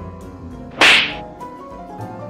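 Background music with a light keyboard-like melody. A single sudden, loud noisy burst cuts in about a second in and dies away within a few tenths of a second.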